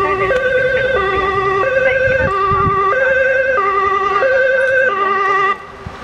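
Ambulance's two-tone siren from an approaching ambulance, alternating a high and a low note about every two-thirds of a second. It cuts off suddenly about five and a half seconds in.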